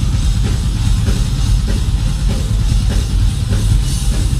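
A live doom-death metal band playing loud: heavily distorted electric guitars over a pounding drum kit, with a steady beat of about three hits every two seconds.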